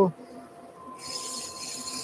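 Sheet of 240-grit abrasive pressed against a wooden spindle turning on a lathe, starting about a second in: a steady, high-pitched hiss of sanding over the low hum of the running lathe.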